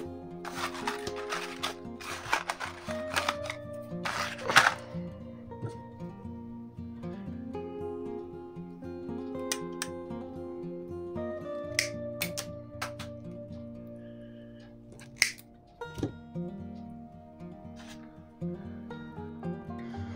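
Background music throughout, with a stretch of rustling in the first few seconds and scattered sharp clicks later on from fishing tackle being handled.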